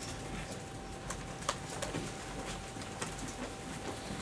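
Quiet room tone with a steady electrical hum and a few faint, scattered clicks and taps.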